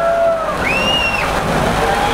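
Ground fountain fireworks (flower pots) spraying sparks with a steady, rain-like hiss. A brief high tone rises and holds about halfway through.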